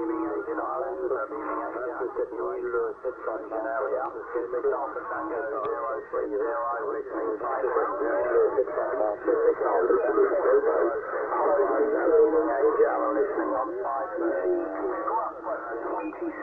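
Distant stations' voices coming in over a Yaesu transceiver's speaker on the 27 MHz CB band, in thin, narrow-band sideband radio audio. This is long-distance skip reception under strong band propagation.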